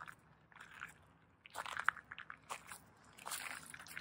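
Footsteps crunching on loose gravel, a few uneven steps.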